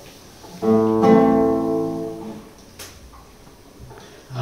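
Acoustic guitar: a chord strummed about half a second in, struck again just after, ringing and fading out over about a second and a half. A faint click follows near the end.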